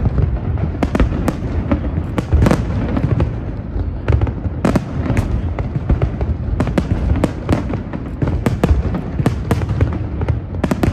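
A fireworks display: aerial shells bursting in an irregular run of sharp bangs and crackles, several a second, over a constant low rumble.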